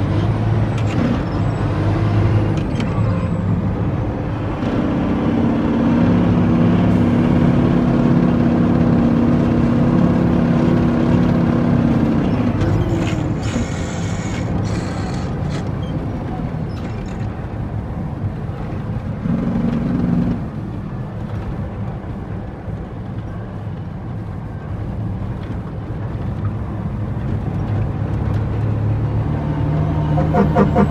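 Diesel engine of an International 9400 dump truck running steadily, heard from inside the cab as it drives a rough quarry road, with a heavier drone for several seconds in the first half. A brief hiss of air comes about halfway through.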